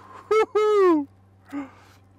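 A person's voice: a short, loud, high-pitched exclamation that falls in pitch, lasting under a second. A faint low hum runs underneath.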